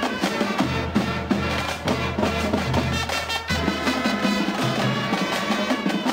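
High school marching band playing a tune: flutes and brass over a drumline keeping a steady beat.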